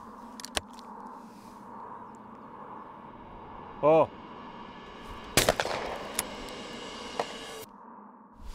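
A skeet shooter's short shouted call for the target, then about a second and a half later a single loud shotgun shot whose sound rings on for about two seconds, with a few fainter sharp cracks after it. The call and the shot sit over faint steady outdoor air.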